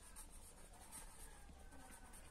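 Faint scratching of a felt-tip pen writing on notebook paper.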